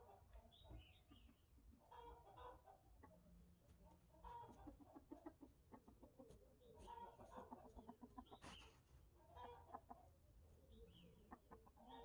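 Near silence, with faint chicken clucking in several short bouts separated by pauses.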